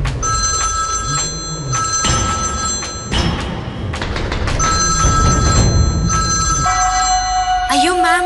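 Mobile phone ringtone ringing in two long bursts, each a few seconds long, over background music.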